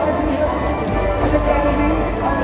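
Horses' hooves galloping on the arena dirt as two rodeo riders run a steer along the padded wall, heard under a voice and music.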